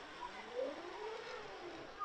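A distant siren giving a pre-blast warning signal, its tone rising and then falling in pitch over about a second and a half.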